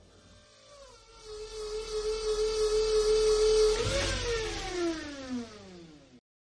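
Logo-ident sound effect: a steady hum swells in, then about four seconds in it swooshes past and falls steadily in pitch, like something flying by.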